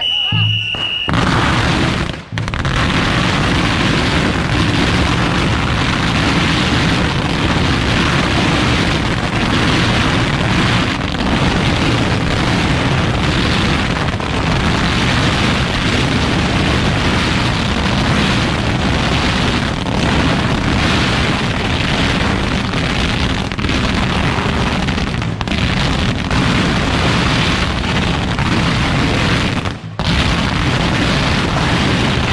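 A brief held high tone in the first second, then a dense, unbroken barrage of firecrackers, many small cracks and bangs running together. Packs of firecrackers are being lit and thrown one after another.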